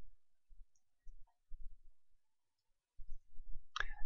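Faint, sparse computer mouse clicks with a few short low thumps, and near silence in between.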